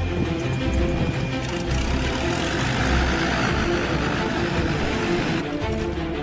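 Bayraktar TB3 drone's propeller engine running on the runway during its run test: a steady rushing noise that cuts off suddenly near the end, with background music underneath.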